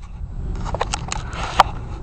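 Handling noise from a handheld camera being turned around: a run of clicks and rubbing knocks, the sharpest and loudest about one and a half seconds in, over a low rumble of wind on the microphone.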